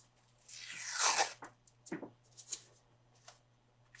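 Adhesive tape pulled off its roll in one long rasping peel lasting about a second, followed by a soft knock and a few light crinkles and ticks.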